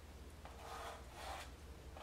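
Small brush stroking oil paint onto stretched canvas, two faint soft swishes over a low steady hum.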